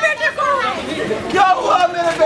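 Speech only: voices talking, with no other distinct sound.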